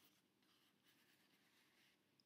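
Near silence: very faint rustling of card paper as the pages of a scrapbook album are handled.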